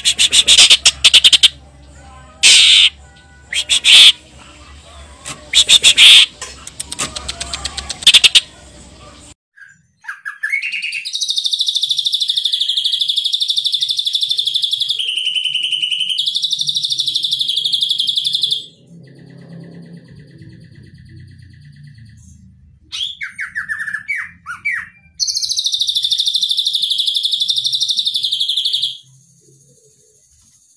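Caged male cucak ijo (green leafbird) singing loud, sharp calls in quick, separated bursts, then a second bird delivering long, unbroken high trilled song phrases several seconds each, with a pause and a few short notes between them. The song is filled with mimicked 'cililin' phrases.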